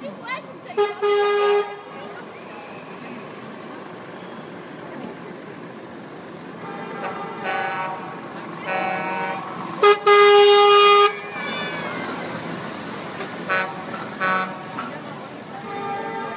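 Vehicle horns honking repeatedly from a slow convoy of a van and lorries, in a mix of short toots and longer blasts. The loudest and longest blast comes about ten seconds in, as a lorry passes close by.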